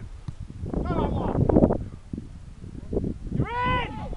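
Men shouting across a football pitch: a short shout about a second in and a long, drawn-out call near the end. Under the first shout there is a loud rumble of microphone noise.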